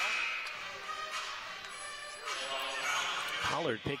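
Indoor basketball arena ambience during a stoppage in play: a crowd murmuring and calling out, with music playing in the hall.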